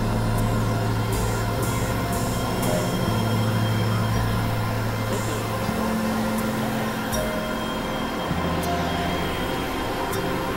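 Experimental electronic drone music: low sustained synthesizer bass notes under a dense hiss of noise. The bass drops lower about a third of the way in, rises higher after about six seconds, then drops again near the end, with scattered sharp high clicks.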